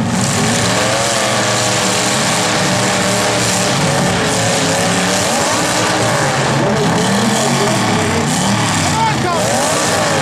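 Demolition derby cars' engines revving hard, their pitch rising and falling unevenly throughout.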